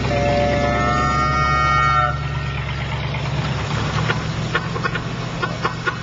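Car horn sounding one steady, two-toned honk for about two seconds, stopping abruptly, over the steady engine and road noise of the moving car, which carries on after the horn stops.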